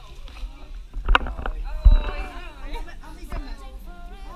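Several people's voices talking over a low rumble, with two sharp knocks about one and two seconds in, the second the loudest.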